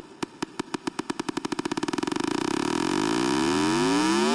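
Hardstyle build-up: a drum roll that speeds up from about two hits a second into a continuous blur, getting steadily louder. Over its second half a synth sweep rises in pitch.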